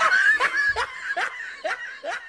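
A person laughing in short 'ha' pulses, each sliding down in pitch, about two a second, growing fainter toward the end.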